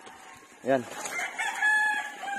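A rooster crowing: one long, drawn-out crow that starts about a second in and holds a steady pitch.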